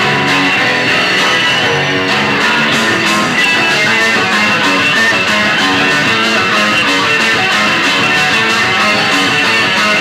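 Live rock band playing, electric guitar to the fore over drums, recorded on VHS tape.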